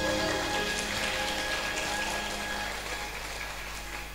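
Audience applause, gradually fading away.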